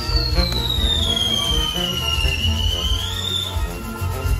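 A whistling firework from the burning torito gives one long whistle that slides down in pitch, rises slightly, and stops shortly before the end. Band dance music plays under it.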